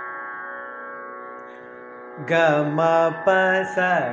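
A steady sruti drone sounds alone for about two seconds. Then a man comes in over it singing the Carnatic swaras (sol-fa syllables such as ga, pa, sa) of a varnam in raga Sudhadhanyasi, in clear pitch steps.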